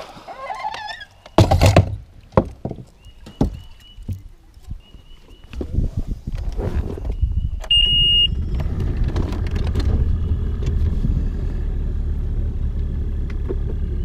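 Knocks and clatter as a bow-mounted trolling motor is stowed, then a bass boat's outboard engine is started with the ignition key and settles into a steady low idle, with a brief high beep as it starts.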